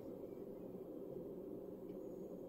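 Faint, steady low background hiss and hum with nothing else happening: room tone in a pause between words.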